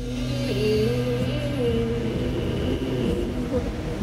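Live music in a quiet stretch between sung lines: a held low note under a single wavering melody line.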